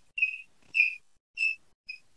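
Chalk squeaking on a blackboard while writing: four short, high squeaks, each a fraction of a second, spread evenly across about two seconds.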